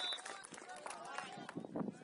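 A referee's whistle: one long steady blast that cuts off just after the start. Then scattered, unclear shouting and talking from players and sideline spectators.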